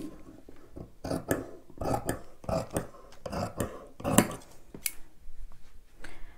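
Scissors cutting through knit fabric along a paper pattern: a run of irregular snips, the metal blades clicking as they close, dying away about five seconds in.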